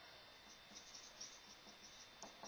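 Near silence, with the faint squeak and scratch of a marker writing on a whiteboard.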